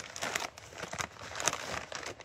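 A plastic bag crinkling in an irregular run of crackles as a hand works into it to scoop out a granular mineral soil amendment.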